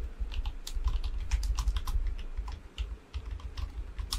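Typing on a computer keyboard: an uneven run of quick key clicks over low keystroke thuds, with a short lull near the end, as a text prompt is entered.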